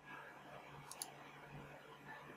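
Two quick computer mouse clicks in close succession, like a double-click, about halfway through, over faint room tone.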